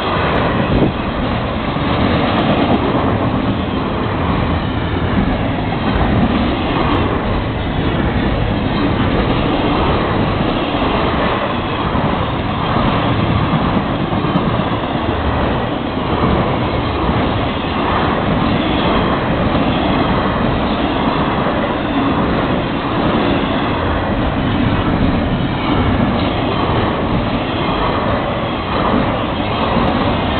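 Intermodal freight train cars rolling past close by, flatcars carrying highway trailers and well cars with double-stacked containers, making a loud, steady noise of wheels on rail.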